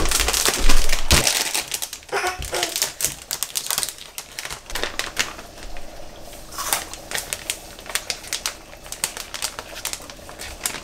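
Paper bag of rice flour crinkling and rustling as it is handled and tipped over a stainless steel bowl, a run of small crackles and clicks. A louder rustle comes in the first second.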